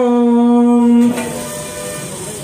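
A man's voice chanting a Sanskrit mantra on one steady pitch, holding the last syllable as a long even note that breaks off about a second in; then only faint background noise.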